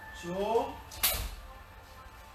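A man's voice counts "dois" (two), then a single sharp impact sounds about a second in, made by the tai chi practitioner's own movement.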